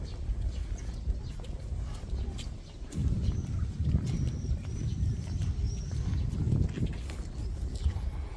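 Wind rumbling on the microphone, heavier from about three seconds in, with birds singing faintly in the background.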